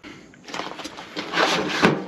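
Rustling and scraping of a cardboard meal sleeve being slid off a plastic food tray. It grows louder through the second half, with one sharp click near the end.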